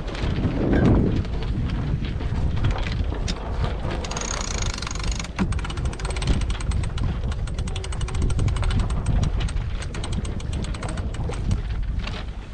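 Yacht winch being cranked with a winch handle, its pawls clicking rapidly, winding in the single-line reefing line, over wind noise on the microphone. The clicking starts a few seconds in.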